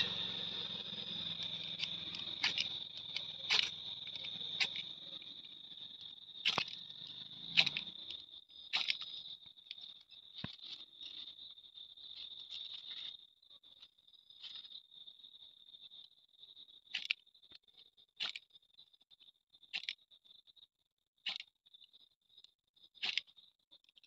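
Ferro rod (flint rod) struck with a metal striker to throw sparks onto paper and dry-leaf tinder. It gives about a dozen short, sharp scrapes at irregular intervals, with a pause about halfway through, over a steady high-pitched drone.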